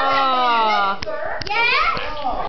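A voice holding one long, slowly falling note for about a second, followed by a few sharp clicks and then short rising voice sounds near the end.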